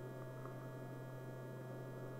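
Steady low electrical hum with faint hiss on an old 16 mm film soundtrack, with no other sound.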